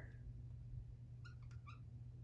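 Dry-erase marker squeaking faintly on a whiteboard as it writes, three or four short high squeaks in the second half, over a steady low hum.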